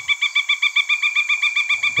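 Pileated woodpecker giving its piping call: a fast, even series of short notes, about eleven a second, sounding like laughter.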